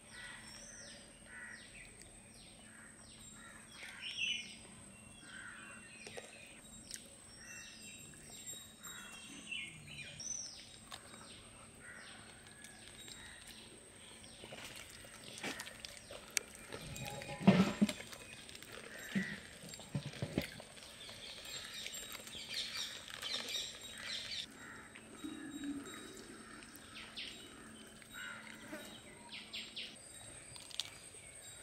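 Small birds calling in a quiet outdoor setting: a run of short, high, falling chirps repeating over the first ten seconds, then scattered fainter calls. A brief, louder thump comes about 17 seconds in.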